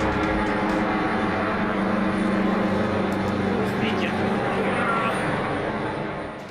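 Helicopter flying overhead: steady engine and rotor noise with a thin, high, steady whine.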